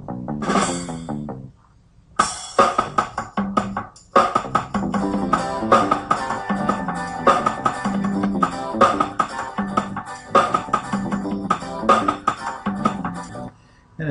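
Playback of a mixed-down backing track: acoustic guitar, bass and drums playing together in time, with the drums panned to one side of the stereo mix and the guitar and bass to the other. A short snippet plays, then about a second and a half of break, then the full groove runs steadily until just before the end.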